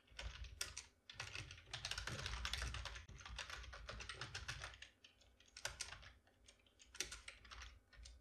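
Computer keyboard typing: faint runs of quick keystrokes that thin out to a few scattered taps after about five seconds.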